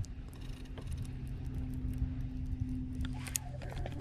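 Baitcasting reel cranked quickly on a fast retrieve of an Alabama rig, giving light rattling clicks over a steady low hum.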